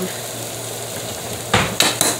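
Ham steak and fried eggs sizzling steadily on a stovetop griddle. About a second and a half in come two loud clatters as metal tongs are pulled from a kitchen utensil drawer.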